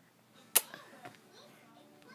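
A toddler's kiss on the phone: a single sharp lip smack close to the microphone about half a second in.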